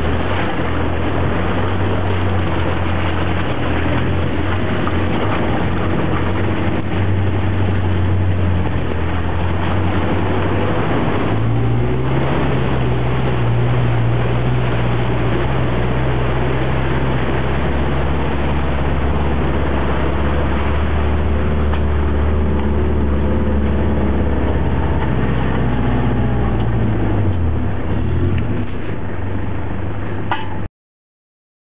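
A four-wheel drive's engine running, heard from inside the vehicle as it drives along a muddy track. The engine note rises about twelve seconds in, holds, and drops back near the end.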